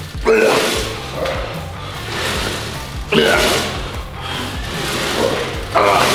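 Background music with a steady beat, and three loud strained grunts, about three seconds apart, from a man pushing through leg press reps.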